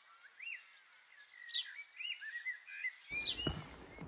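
Small birds singing: a string of short whistled chirps that rise and fall, with a couple of quick downward-sliding calls.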